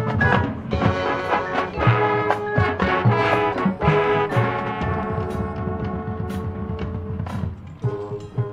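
Marching band playing its field show: brass holding sustained chords over drum and percussion hits.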